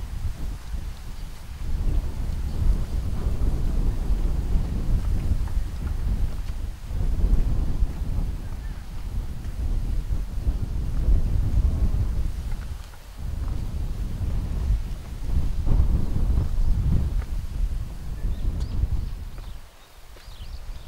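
Wind buffeting the microphone: a loud, gusty low rumble that swells and drops every few seconds, easing briefly about a third of the way in and again at the very end.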